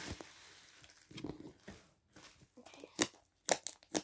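Hands squishing and stretching a thick, glossy slime with small beads mixed in, giving soft sticky crackling and three sharp pops in the last second and a half.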